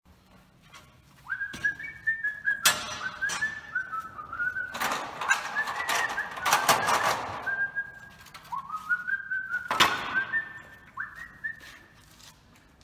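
A person whistling a tune in short phrases that step upward in pitch, broken by a few sharp knocks and a stretch of clattering about halfway through.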